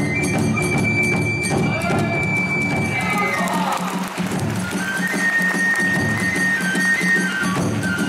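Kagura hayashi music: a taiko drum and small hand cymbals keep a steady beat under a bamboo flute holding long high notes.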